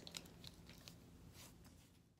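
Near silence with a few faint clicks and rattles of plastic markers and colored pencils being handled.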